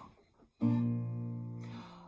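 A single chord strummed on an acoustic guitar about half a second in, left ringing and slowly fading.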